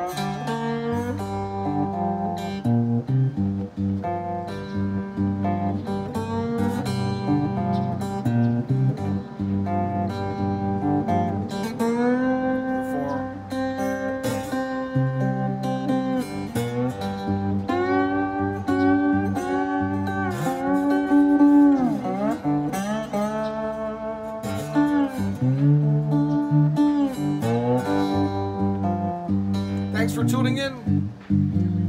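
A three-string cigar box guitar, tuned G-D-G, played with a bottleneck slide: a blues figure of plucked notes that glide up and down between pitches.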